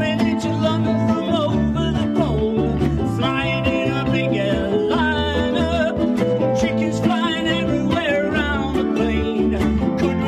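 A group of ukuleles strummed together in a steady rhythm, with several voices singing the tune into microphones and bass notes moving underneath.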